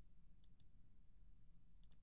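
Near silence with faint computer mouse clicks: a quick double click about half a second in and a couple more clicks near the end.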